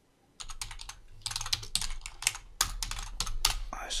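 Typing on a computer keyboard: a quick, dense run of keystrokes entering a short file name, starting about half a second in and stopping just before the end.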